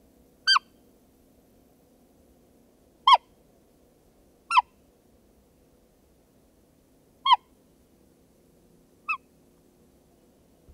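Hunter's roe deer call sounded five times at irregular intervals, each a short, high, squeaky piping note that falls in pitch. It imitates a roe kid screaming for its mother, a kid-in-distress call meant to lure a roebuck in.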